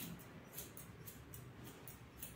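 Hairdressing scissors snipping through a section of long hair: a quick, irregular run of faint, crisp snips, a few each second.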